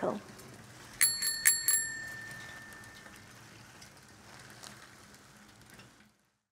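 Bicycle bell rung three times in quick succession about a second in, the ring fading out over the next second or so.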